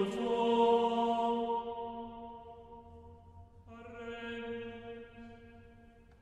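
Background music of slow chant-like singing in long held notes. A new note enters a little past halfway, and the sound fades away near the end.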